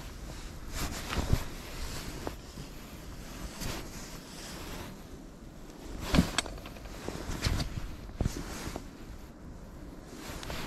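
Rustling of winter clothing and scattered knocks as a person shifts about beside a hole in lake ice, the sharpest knock about six seconds in, over a faint outdoor background.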